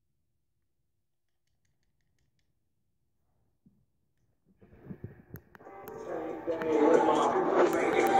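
Dead silence for about the first half. Then a few short knocks, and a hip-hop track with rapped vocals comes in and grows louder toward the end.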